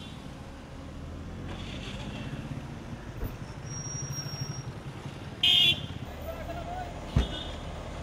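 Street traffic noise: a steady low rumble of vehicles with voices in it, a short loud horn toot about five and a half seconds in, and a sharp knock near the end.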